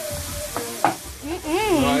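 Green peppers and onions frying in a sauce in a non-stick frying pan, sizzling steadily while a wooden spoon stirs them, with a sharp knock of the spoon on the pan a little under a second in.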